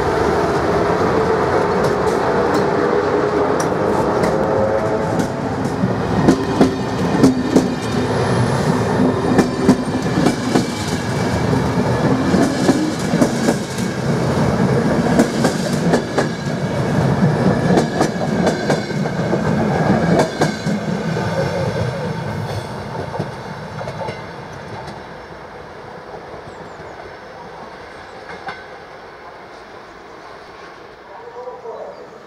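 ZSSK class 350 electric locomotive hauling an express train through a station. The locomotive passes first, then the coaches' wheels clatter over rail joints and points in a rapid run of clicks. The sound fades away about 23 seconds in as the train recedes.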